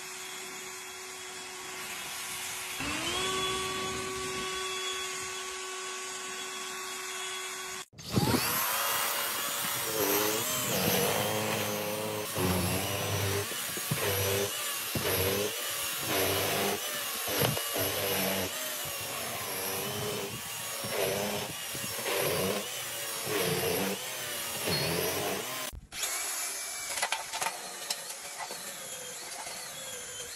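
A sequence of battery power tools: an EGO cordless leaf blower running steadily, its pitch stepping up about three seconds in. After a cut, a cordless power snow shovel runs louder, its motor pitch repeatedly dipping and recovering. After another cut near the end, a Makita cordless earth auger runs steadily.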